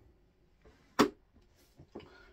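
Books being handled: one sharp knock about a second in, as of a book set down on a hard surface, with faint rustling before and after.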